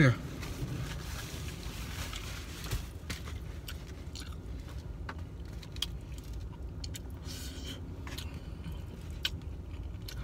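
Eating sounds: a plastic fork scraping and clicking in a foam takeout container, with chewing, over a steady low rumble in a car cabin.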